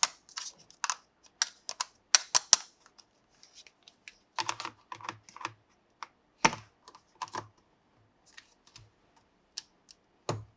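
Small hard plastic toy pieces being handled, making a string of irregular sharp clicks and taps, with a few duller knocks about halfway through.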